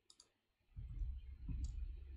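Faint computer mouse clicks while navigating between web pages, a couple near the start and one more about one and a half seconds in, over a low rumble.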